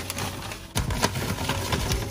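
Coarse, pebbly desert sand pouring from a bag onto a heap of sand: a dense rattling hiss of grains and small clumps, with the bag rustling as it is shaken. The flow pauses briefly about two-thirds of a second in, then picks up again.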